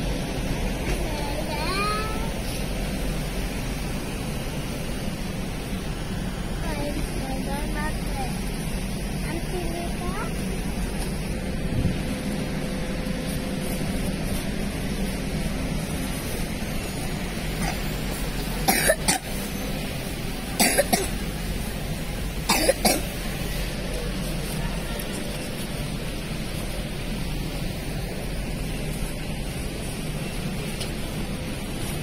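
Steady supermarket background noise with faint, indistinct voices. Three short, loud, sharp sounds come about two-thirds of the way through, two seconds apart.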